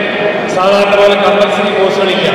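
A man's voice speaking, starting about half a second in.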